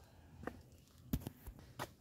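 A few faint, sharp clicks and knocks, about four in two seconds, over a quiet background.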